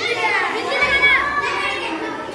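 Children's high-pitched voices talking and calling out over one another.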